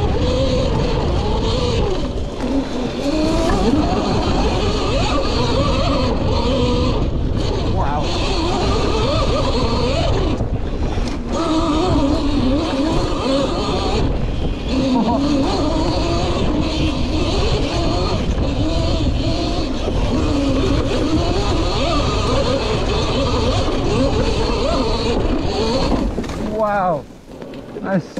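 Cake Kalk OR electric motocross bike ridden flat out on a forest trail: the electric motor whine rises and falls with the throttle over a heavy rumble of wind and rough ground. It slows and stops near the end.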